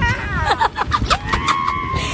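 A drift trike's hard wheels rolling and scraping over rough asphalt, a steady low rumble with small clicks. Voices cry out over it, one high cry held from a little past halfway.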